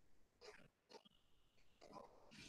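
Near silence from an open call microphone, with a few faint short noises and a brief faint high tone about a second in.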